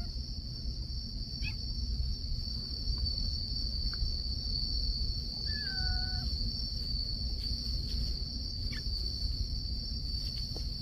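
Insects chirring in one steady, continuous high-pitched drone over a low rumble. About halfway through, a short falling call sounds once.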